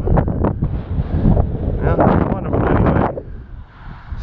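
Wind buffeting the microphone: a loud low rumble with scattered sharper rustles over it, dying down near the end.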